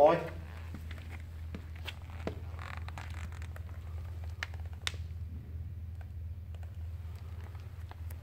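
A steady low hum with scattered faint clicks and ticks.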